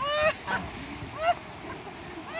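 Three short, high-pitched, honk-like vocal yelps from a person, each a brief rising-and-falling cry, near the start, about half a second in, and a little past the middle.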